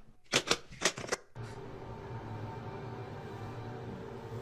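About five sharp clicks and knocks in quick succession over the first second or so, from locks and shutters being clicked shut. After that, a steady low hum with faint hiss.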